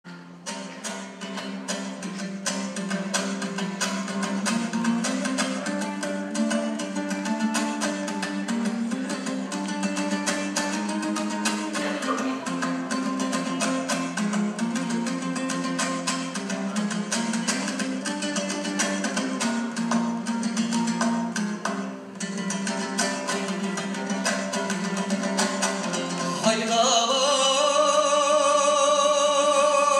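Kazakh dombra strummed in a fast, even rhythm, with a steady low note under a moving melody, as the instrumental opening of a folk song. A man's singing voice comes in near the end.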